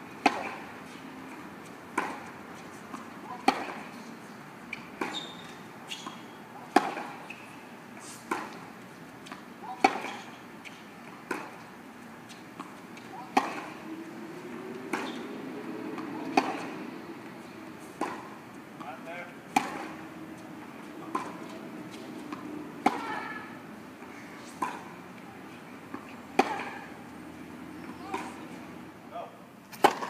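Tennis balls struck by rackets in a baseline rally on a hard court: a sharp pop roughly every second and a half, the rhythm of shots going back and forth.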